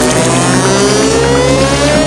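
Electro house music at a build-up: a synth riser sweeping steadily upward in pitch over held synth notes, with the drum beat dropped out.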